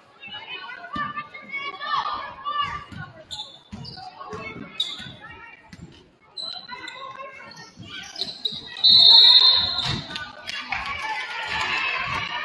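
Basketball game in a gym: a basketball dribbling, sneakers squeaking on the hardwood, and players and spectators calling out. About nine seconds in, a referee's whistle gives one loud, steady blast lasting about a second, and the game clock stops.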